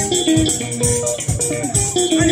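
Live sungura band playing an instrumental passage: interlocking electric guitar lines over bass guitar, with a steady drum beat and cymbals.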